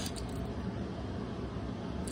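Steady background hiss of room tone, with no distinct clicks or handling sounds.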